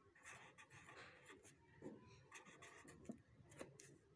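Faint scratching of a pen writing words on ruled notebook paper, in short irregular strokes with a few light ticks.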